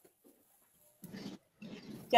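A pause in conversation: about a second of near silence, then two faint, brief voice sounds, like a breath or a short murmur before speaking.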